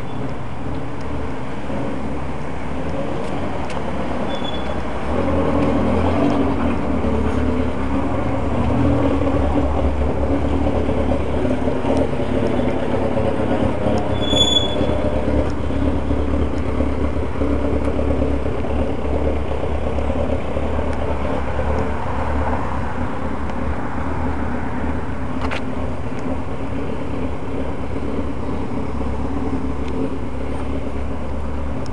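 Car engine and tyre noise while driving, a steady low hum that gets louder about five seconds in and eases off in the second half.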